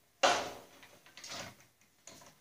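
Overhead metal dust-collection arm with flex hose being swung down over a table saw: a sharp clunk about a quarter second in that fades out, then a second, softer clunk past the middle as the arm settles.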